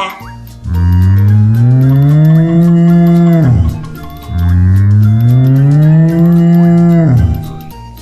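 Domestic cow mooing twice: two long moos of about three seconds each, each rising slowly in pitch and then dropping sharply at the end.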